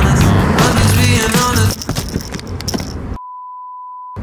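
Background music, which cuts off about three seconds in and gives way to a steady single-pitched beep: the broadcast test tone that goes with TV colour bars.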